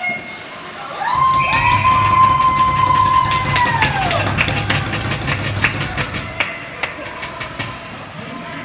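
A horn sounds for about three seconds, falling in pitch as it dies away, signalling a goal. Cheering and a run of sharp knocks follow.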